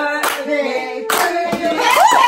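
Several people clapping their hands, with voices singing along.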